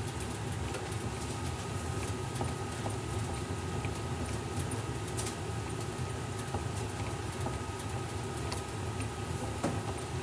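Bat-rolling machine's rollers turning and pressing a DeMarini bat barrel during a hand-cranked heat roll, breaking in the bat: a steady low rumble with light scratchy patter and scattered small ticks.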